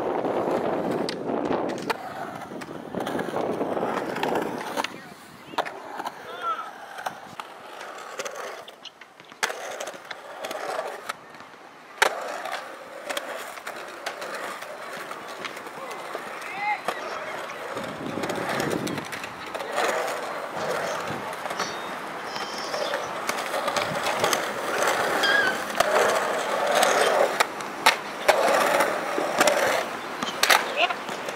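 Skateboard wheels rolling and carving on a concrete bowl, broken by sharp clacks of the board popping and landing. The loudest clack comes about twelve seconds in.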